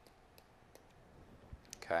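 A few faint, separate computer mouse clicks as digits are entered one at a time on an on-screen calculator emulator's keypad.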